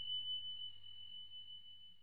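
A high, pure bell tone ringing out as one steady note and slowly fading away.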